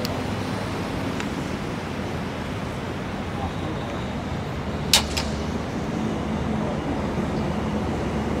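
Steady low outdoor rumble of traffic, with two sharp knocks in quick succession about five seconds in, and a fainter click just after one second.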